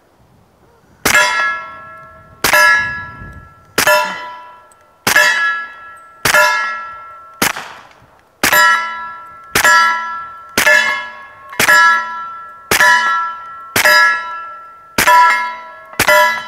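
Suppressed Smith & Wesson M&P45 pistol fired steadily at steel targets: about thirteen evenly paced shots, roughly one a second, each followed by the loud clang and fading ring of a hit steel plate.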